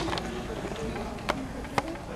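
Low murmur of voices in a hall, with two sharp knocks about half a second apart near the end, the second the louder: stage equipment being knocked as a keyboard and microphone stands are set up.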